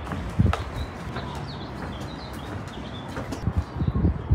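Footsteps on a wooden boardwalk, a few irregular thumps, with birds chirping in short high calls in the middle stretch.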